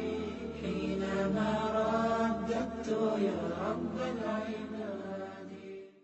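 Chanted vocal music, layered voices over a low steady drone, fading out at the very end.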